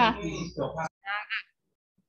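Speech only: a woman's voice ends a short question, then two brief, high-pitched voice sounds come about a second in.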